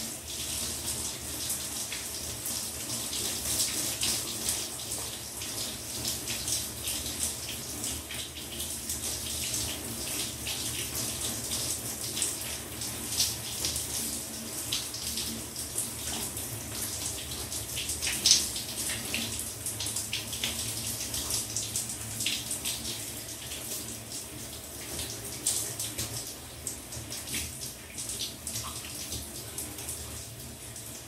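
Shower running: a steady spray of water with irregular splashes, the loudest about 18 seconds in, over a faint low steady hum.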